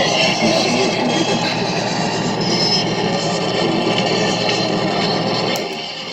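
Improvised noise music from effects pedals and a knob-controlled noise box: a dense, harsh wash of noise over a steady low drone, which thins out and drops in level near the end.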